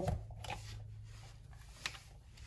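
Quiet handling of an e-bike battery charger as it is plugged in, with soft rustles and one sharp click near the end, over a faint steady low hum.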